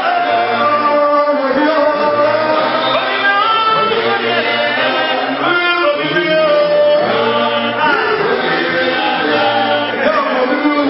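A group of men singing a gospel song together, one voice led into a microphone, continuing without a break.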